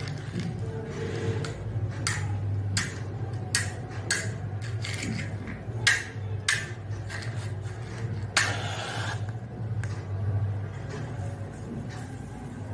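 A matchstick struck again and again against the striking strip of a matchbox: a series of short, sharp scrapes, then a longer scrape with a hiss about eight seconds in as a match catches and flares. A low steady hum runs underneath.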